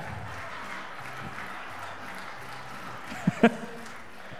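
Audience applauding lightly and murmuring, with a short voice sound from someone near the end.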